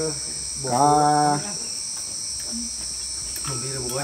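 A steady, high-pitched chorus of insects such as crickets runs under the scene, with a man's voice briefly about a second in and again just before the end.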